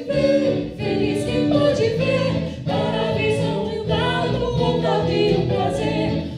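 A small band playing a song live: several voices singing together, male lead with backing singers, over acoustic guitar.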